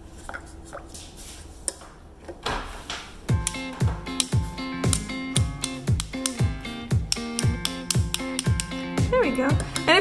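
Background music: a plucked-string tune fades out, then about three seconds in a steady beat with a deep kick drum about twice a second comes in under sustained tones, and a voice joins near the end.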